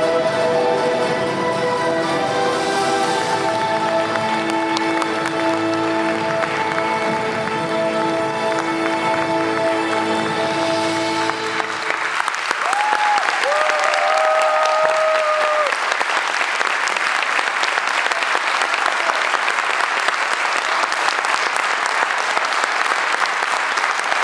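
Slow string-led music with long held notes ends about halfway through, and a theatre audience breaks into applause and cheering that continues to the end, with a few short rising-and-falling cheers soon after it starts.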